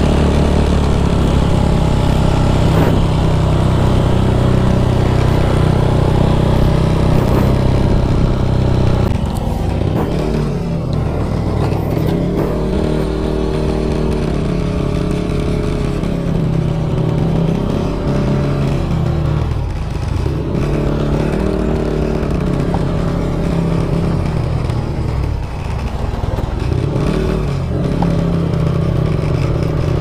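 Motorcycle engine heard from the rider's seat while riding, holding a steady note for the first nine seconds or so, then repeatedly rising and falling in pitch as the bike speeds up and slows down.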